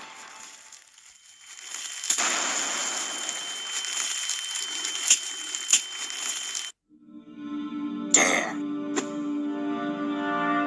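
Cartoon explosion sound effect: a sudden noisy blast about two seconds in that carries on for several seconds under a steady high ringing tone, with a few sharp cracks, then cuts off abruptly. Music with held notes starts about a second later, with a short burst of noise near eight seconds.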